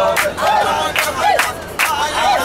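A group of people singing and shouting praise songs together, with sharp hand claps a little over once a second.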